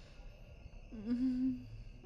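A young woman's short closed-mouth "hmm" hum, about a second in, lasting under a second at a level pitch.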